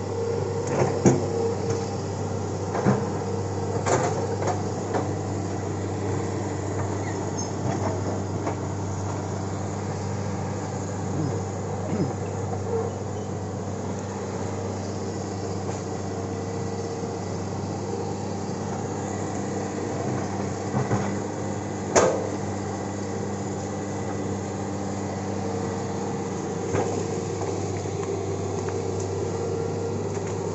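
Hitachi tracked excavator's diesel engine running steadily under load as the machine works, with scattered knocks and cracks from the bucket working among felled trees and earth. One sharp knock about two-thirds of the way through is the loudest.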